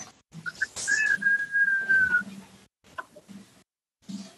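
A high, steady whistle-like tone lasting just over a second and dipping slightly in pitch at its end, after two brief shorter peeps. A few faint clicks follow.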